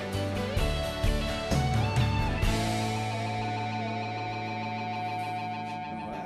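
Live country band playing an instrumental break with electric guitar and drums. About two and a half seconds in, the drums drop out and a held chord rings on, slowly fading.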